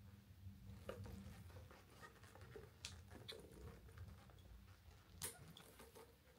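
Near silence over a low steady room hum, with a few faint clicks and rustles as a bag's shoulder strap and its metal clasps are handled; the sharpest click comes about five seconds in.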